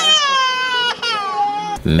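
A toddler crying: two long, high-pitched wails, each falling in pitch, then a man's voice starts near the end.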